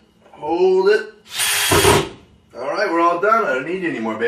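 Cordless power drill run in one short burst of about half a second, roughly a second and a half in, at a kitchen cabinet.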